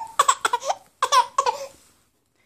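A seven-month-old baby's short, high-pitched squeals, in two runs about a second apart.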